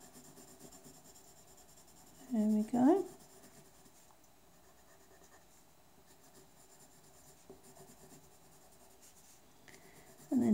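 Coloured pencil shading on paper: a faint, steady scratching as the colour is laid on. A brief spoken word comes about two and a half seconds in.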